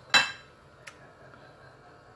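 One sharp clink of a kitchen utensil against cookware, ringing briefly, followed by a faint click about a second later.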